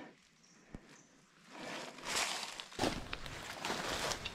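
Footsteps and brushing through ferns and undergrowth on loose ground, with a few sharp snaps or crunches. It starts after a second and a half of near silence.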